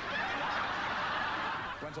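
Studio audience laughing, a dense crowd laugh that starts suddenly and dies away near the end, as a man begins to speak.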